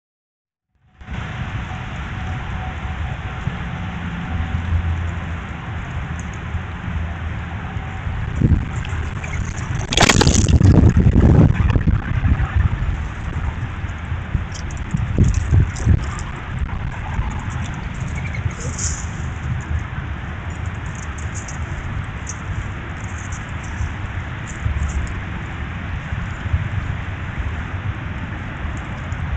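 Steady outdoor noise hiss with a few scattered knocks and a loud low rumbling burst about ten seconds in.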